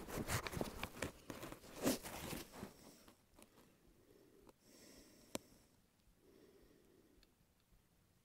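Bolt of a Barrett MRAD bolt-action rifle being worked to chamber a round, heard as a run of faint clicks and clacks over the first couple of seconds. One sharp click follows about five seconds in.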